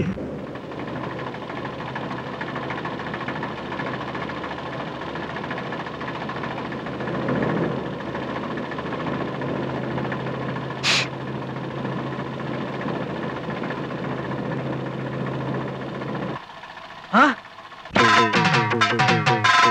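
Engine of a vintage open-top car running steadily, with a low hum under a noisy rumble. A brief high hiss comes about eleven seconds in, and near the end the engine sound cuts out and a short gliding whistle-like tone sweeps up and down.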